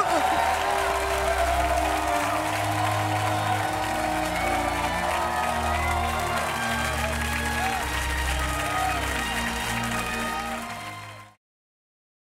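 Closing theme music with steady held bass notes over studio audience applause, fading out quickly and ending about eleven seconds in.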